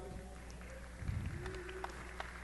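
Faint gymnasium background between announcements: a low steady hum under quiet crowd noise, with a few light knocks and a brief distant voice.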